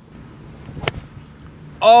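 A putter striking a golf ball on a full swing from the fairway turf: one sharp click just under a second in. The golfer calls it a chunk hook, meaning the clubhead caught the ground before the ball.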